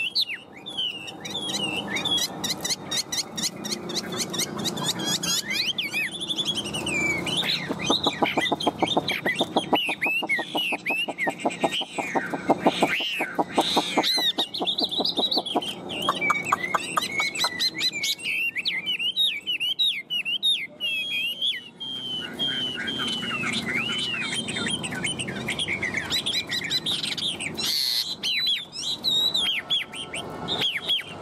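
Chinese hwamei singing a long, unbroken run of loud whistled phrases that glide up and down in pitch. Roughly between a quarter and halfway through, it breaks into a stretch of rapid rattling notes.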